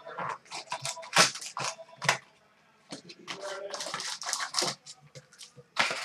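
Irregular crinkling and ripping of foil card-pack wrappers and cardboard as a box of hockey cards is opened by hand: a quick uneven run of sharp rustles and tears.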